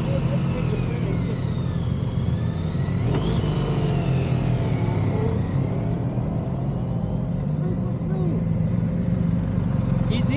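Motorcycle engines running at low speed through slow, tight turns, a steady low hum, with a brief rising whine about three seconds in.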